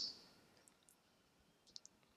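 Near silence in a pause between words, with a few faint, short clicks, a couple near the end.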